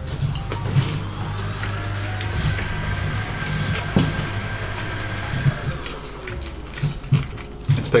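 A passing vehicle, its noise swelling in over the first second and dying away about seven seconds in, with a sharp click about four seconds in.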